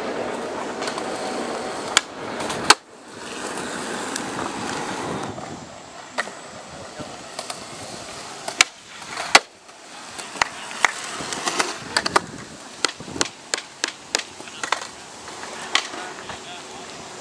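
Skateboard wheels rolling on concrete, with sharp clacks of the board striking the ground: two loud clacks about two and three seconds in, another pair a little past the middle, then a quick run of lighter clacks near the end.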